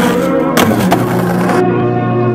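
A skateboard scraping and rolling along a concrete ledge, a hissing scrape broken by a few sharp clacks of the board, over background music. The board noise cuts off about one and a half seconds in.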